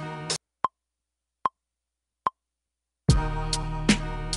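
A boom-bap hip hop beat played from a Native Instruments Maschine cuts off, then three short, evenly spaced metronome clicks count back in, a little under a second apart, and the beat restarts about three seconds in.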